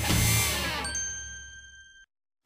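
The end of a TV segment's title music, fading out after a final hit. About a second in, a bright bell-like ding starts and rings steadily until the sound cuts off abruptly.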